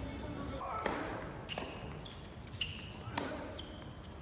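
A tennis ball bounced on an indoor hard court: four sharp knocks spaced under a second apart, each followed by a short high squeak.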